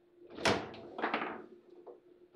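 Foosball table in play: a loud knock about half a second in, then two quicker knocks about a second in, as the ball is struck and the rods bang against the table's sides.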